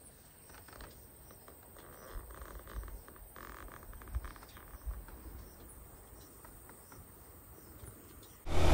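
Faint outdoor ambience of insects chirping steadily in grassland, with some soft rustling and low rumbles in the middle seconds.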